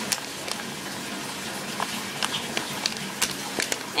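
Bath tap running steadily as the tub fills, with scattered small clicks and crackles of a little knife cutting through a solid bubble bar.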